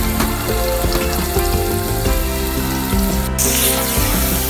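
Chopped onions frying in oil in a pan, a steady sizzle under background music. About three seconds in, after a brief break, the sizzle turns louder and brighter as the onions are stirred with a wooden spoon.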